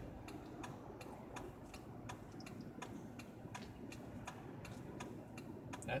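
A car's turn-signal indicator ticking inside the cabin, a steady, even clicking a little over two a second, over a faint low hum.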